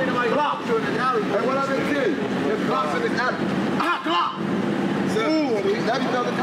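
Several men's voices talking and calling out over one another, unintelligible street chatter.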